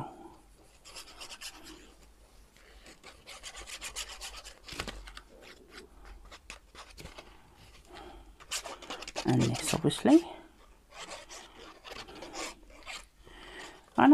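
The nozzle tip of a squeeze bottle of liquid glue scraping and rubbing across paper, with light paper rustling, as glue is run under torn paper pieces. It comes as soft, uneven scratches with short ticks.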